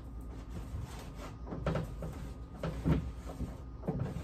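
A plastic kitchen trash can being wiped by hand with a cloth: a series of short, irregular rubbing strokes with light knocks and creaks of the plastic.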